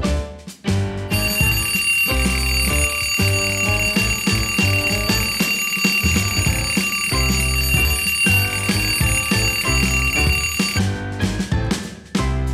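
Bedside electronic alarm clock ringing with a steady, high-pitched tone, starting about a second in and cutting off suddenly near the end as a hand presses down on it. Background music with a drum beat plays throughout.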